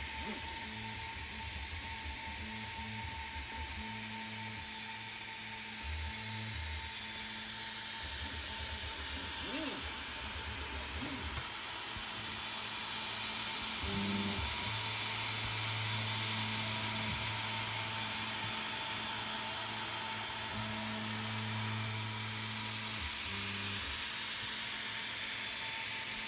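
Anet A8 3D printer running a print: its cooling fans whir steadily with a constant tone, while the stepper motors hum in low tones that start, stop and change pitch every second or few as the axes move.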